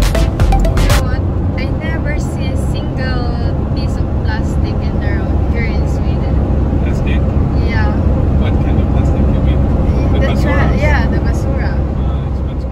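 Steady low road and engine rumble heard from inside a vehicle driving along a highway. Music plays at the very start and stops about a second in.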